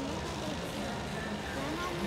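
Steady ballpark background din with distant voices mixed in.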